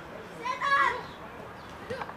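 A high-pitched shout, likely a young player calling out on the pitch, lasting about half a second. A brief thump follows near the end.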